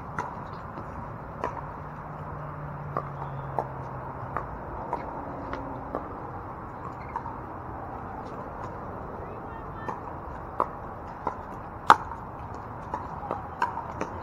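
Pickleball rally: paddles striking a hard plastic pickleball, heard as sharp pops at irregular intervals, some fainter than others, the loudest about twelve seconds in.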